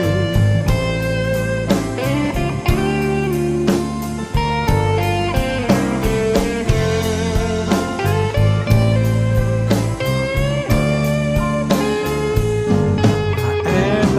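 Live rock band playing an instrumental break with no vocals. Drum kit and bass keep a steady beat under a lead guitar melody with sliding, bending notes.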